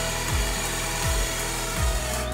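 Cordless drill spinning a hole saw through the wooden side panel of a nightstand, a steady grinding cut that starts abruptly, over background music with a low beat.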